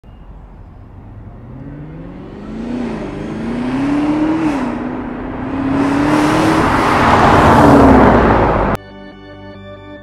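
V8 of a sixth-generation Camaro ZL1, still stock before its cold air intake is fitted, accelerating toward and past, its pitch climbing and dropping with upshifts as it grows louder. It cuts off suddenly near the end and music takes over.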